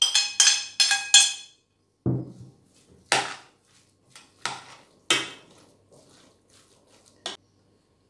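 A ceramic plate knocked against the rim of a stainless-steel pot four times in quick succession, the clinks ringing, to shake chopped herbs into it. A few duller knocks and scrapes follow as the plate is put down on the table and the filling is stirred in the pot.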